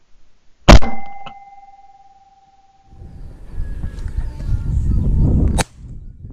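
A single very loud shotgun shot that leaves a ringing tone for a couple of seconds, followed by a lighter click about half a second later. From about halfway through, a low rumbling noise builds and stops abruptly with a sharp knock near the end.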